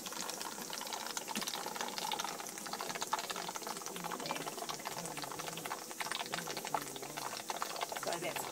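Water boiling in the pot of a 10-litre copper alembic still: a steady bubbling with many fine crackles.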